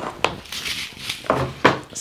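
Seed packets and small items being handled and moved aside on a tabletop: rustling with a few sharp knocks.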